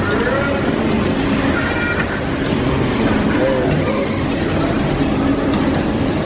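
Electric bumper cars driving around the ride floor, making a steady, dense noise, with short shouts and voices over it now and then.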